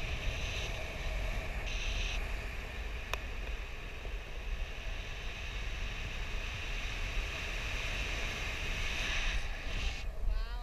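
Airflow rushing past a paraglider in flight, buffeting the camera's microphone: a steady wind rush with a heavy low rumble. A single faint click about three seconds in.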